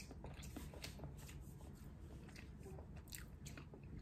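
A person chewing a soft green tea Swiss roll with cream filling, faintly, with small irregular mouth clicks scattered through.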